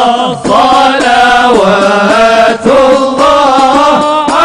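Arabic devotional chanting of a salawat hymn in praise of the Prophet: a singing voice holds long, wavering notes with short breaks between phrases.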